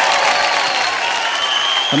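Studio audience applauding with a clatter of many hands, slowly easing off, while the last held note of the music fades under it in the first second. A man starts speaking into a microphone at the very end.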